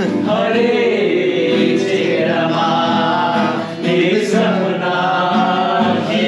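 A song sung by several voices together over music, running continuously.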